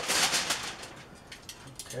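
Aluminium foil crinkling loudly as a rack of pork ribs is flipped over on it with metal tongs, fading within about half a second, followed by a few light clicks of the tongs.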